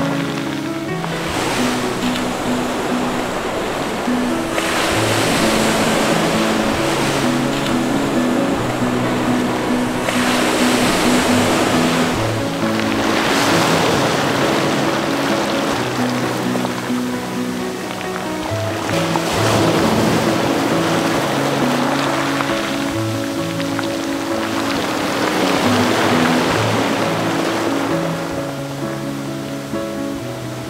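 Sea waves washing in over a pebble shore, swelling and drawing back every few seconds, under background music with slow held notes.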